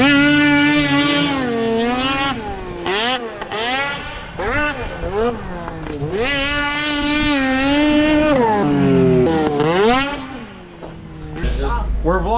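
Polaris snocross race sled's two-stroke engine revving hard as the rider works the throttle over the track. The pitch rises and falls several times, holding high for a couple of seconds at a stretch before dropping off.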